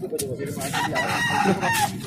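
Rooster crowing, one long drawn-out call starting about half a second in, over a background murmur of voices.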